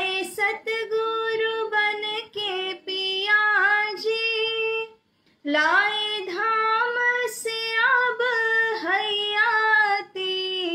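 A woman singing a Hindi devotional bhajan solo, with no instruments, in long held notes. There is a short pause for breath about halfway through.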